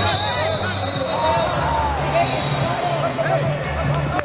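Hubbub of a large arena crowd, many voices shouting and calling over one another in a reverberant hall, with a thin steady high tone in the first second and a half.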